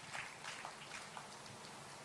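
Faint, scattered applause from a seated audience, a few irregular claps that die away near the end.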